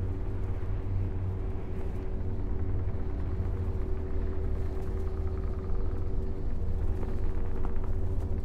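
Dark ambient drone: a steady deep rumble with a single held tone above it, swelling slightly near the end.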